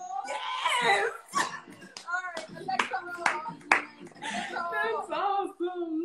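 Women's excited voices and laughter, broken by several sharp hand claps around the middle.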